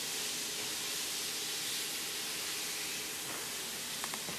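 A steady, even hiss with a faint hum beneath it, unchanging throughout.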